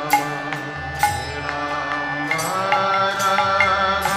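Devotional song music: sustained melody lines over a low drone, with a struck percussion accent roughly once a second. A fuller, wavering melody line comes in a little past halfway.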